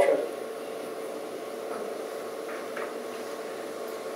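Steady, even room hum between spoken remarks, with no distinct event standing out.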